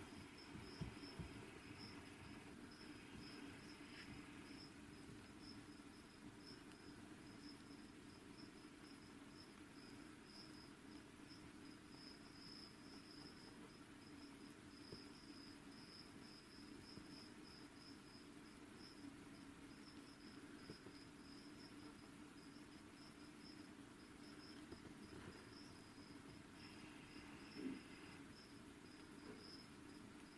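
Faint room tone with a cricket chirping steadily in rapid high-pitched pulses throughout.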